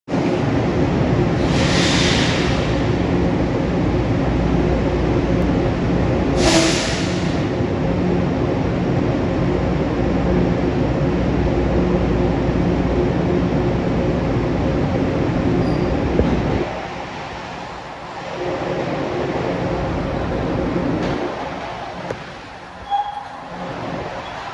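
Metro-North Budd M3A electric train approaching on the underground tracks: a steady low rumble and motor hum, with two short bursts of air hiss in the first seven seconds. The rumble drops away suddenly about two-thirds of the way through, leaving a quieter rumble with a few clicks near the end.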